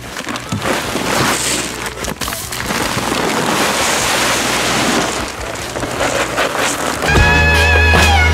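Reindeer feed pellets pouring out of a paper sack into a plastic feed trough: a steady rattling hiss that swells and eases as the pour goes on. About seven seconds in, music starts.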